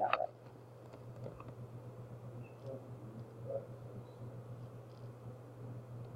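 A few faint, scattered mouse clicks over a steady low electrical hum from the recording setup.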